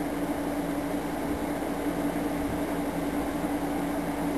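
Steady machine hum with a low, even droning tone and a faint hiss, unchanging throughout.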